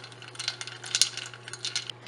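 Ice cubes and a metal spoon clinking against a stainless steel pan as ice is stirred into hot tea: quick, irregular clinks, the loudest about halfway through.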